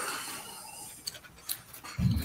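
Rain starting to fall on a tin roof, heard faintly as a steady hiss with a few small ticks.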